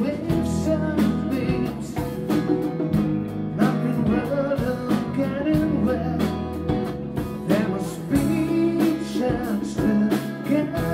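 A rock band playing a song live, with a sung lead vocal, guitars, drums and keyboard, with regular drum hits and sustained low notes. It is recorded only on the camera's own microphone.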